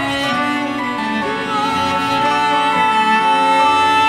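Cello and piano playing an instrumental passage, the cello bowing a long steady held note through the second half.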